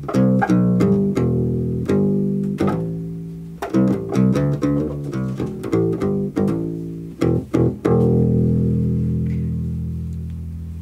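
Kala U-Bass Journeyman ukulele bass with wound metal strings, finger-plucked in a bass line and heard through its pickup system. The last note, about eight seconds in, is left ringing and slowly fades.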